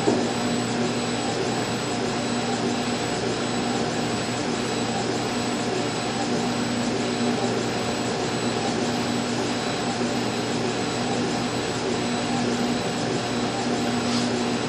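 Laser engraver's exhaust and air-assist blowers running, a steady rush of air with a low hum and a faint high tone that pulses at a regular rhythm. A short knock comes at the very start.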